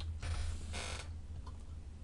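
Faint computer keyboard key presses, the Enter key confirming a cell entry, over a steady low hum from the recording, with a short hiss just under a second in.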